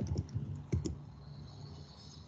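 Computer keyboard keys being typed: about five quick keystrokes in the first second, then the typing stops.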